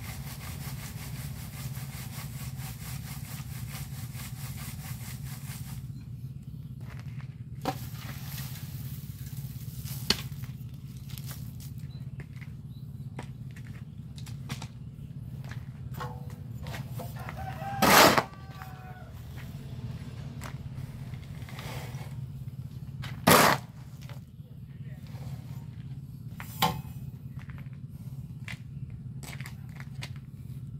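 Lumps of cement set hard being rubbed across a wire sieve in a wooden frame: a fast, even rasping scrape for the first six seconds. After that come scattered clatters of the lumps and two loud sharp knocks, at about 18 and 23 seconds in, with a rooster crowing just before the first knock and a steady low hum underneath.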